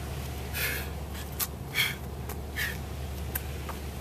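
A person breathing hard during exercise: three short, forceful exhalations about a second apart. A few light clicks fall between them, over a low steady hum.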